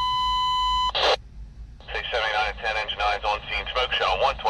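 A steady high beep from a fire-dispatch radio for about the first second. It ends in a short burst of static, and then a dispatcher's voice comes over the radio.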